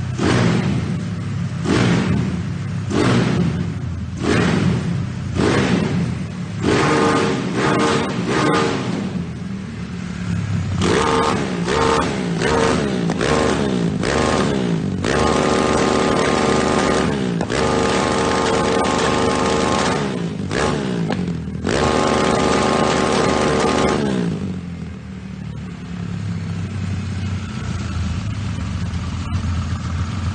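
Honda Titan motorcycle engine, a single-cylinder four-stroke stroked to 273 cc with an XLX 350 carburettor and KS exhaust, revved by hand on the throttle. It starts with sharp blips about once a second, then holds high revs for a few seconds at a time, and settles to idle over the last several seconds.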